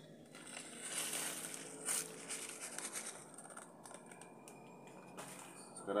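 Thin plastic bag crinkling and rustling as crushed cyanide is shaken out of it into a bucket of slurry, with a sharper crackle about two seconds in, then fading.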